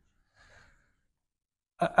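Near silence, with a faint short breath about half a second in; a man starts speaking near the end.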